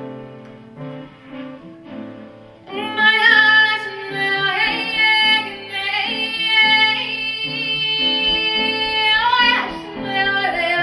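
Live jazz performance: soft piano notes, then a woman's voice comes in loudly about three seconds in, singing long held notes that bend in pitch, with a quick upward slide near the end.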